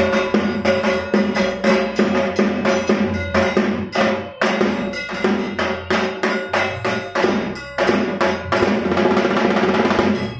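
Percussion-led music, drums beating a fast, steady rhythm.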